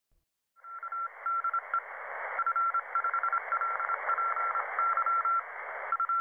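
A single high beep keyed on and off in short and long pulses, like Morse code, over a steady hiss, starting about half a second in.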